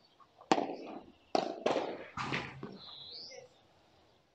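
Padel rackets striking the ball during a rally: four sharp pops in the first two and a half seconds, each with a short ringing tail. A brief high chirp follows a little after three seconds.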